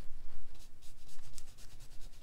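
Watercolor brush bristles scrubbing orange paint in a metal palette well and then stroking onto watercolor paper: a run of small, soft brushing strokes.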